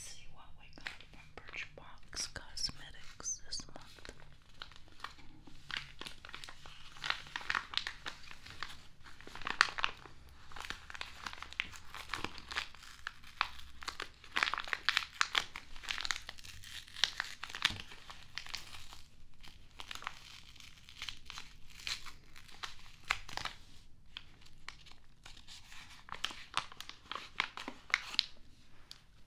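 Close-miked crinkling and tearing of packaging, in dense, irregular crackles throughout.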